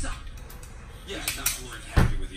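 Metal latch clicks of a school-bus seat harness buckle being fastened: two light clicks about a second and a half in, then a sharper click near the end.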